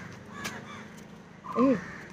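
Crows cawing a few times, with a person's shouted "hey" near the end.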